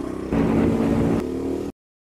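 Motorcycle engine running and revving, stepping up in pitch and level a moment in, then cut off suddenly.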